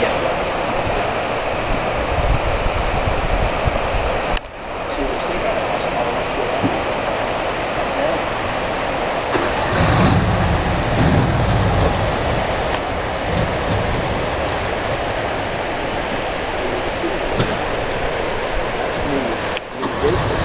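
River water rushing steadily through a breached dam, a constant noisy wash, briefly dropping out about four seconds in, with a deeper rumble for a couple of seconds around ten seconds in.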